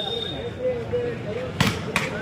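Spectator crowd chattering, with a sharp smack of a hand striking a volleyball about one and a half seconds in and a second, smaller smack near the end.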